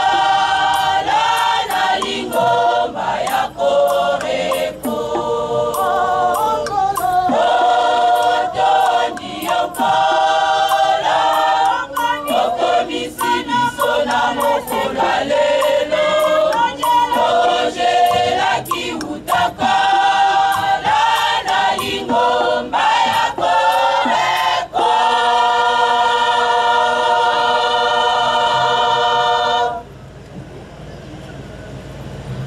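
A choir singing in harmony. It ends on a long held chord of several seconds that cuts off suddenly at the close.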